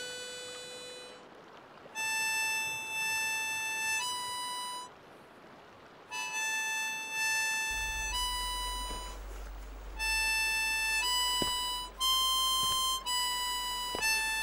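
Harmonica playing a slow melody of long held single notes that step between a few neighbouring pitches, with short pauses about two seconds in and again about five seconds in.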